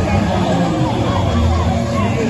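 Loud music blaring from a float truck's loudspeakers, with a crowd's voices mixed in.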